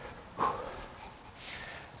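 A fairly quiet gym just after a tuck jump has landed, with one brief soft sound about half a second in as the jumper straightens up and recovers.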